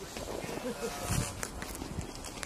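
Faint, indistinct voices in the background, with a few light clicks about a second in.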